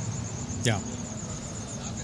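A thin, high-pitched pulsing tone, about ten pulses a second, running steadily under a low hum, with a man's brief spoken "yeah" about half a second in.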